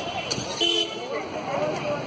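A vehicle horn gives one short honk about two-thirds of a second in, over a background of people's voices and street noise.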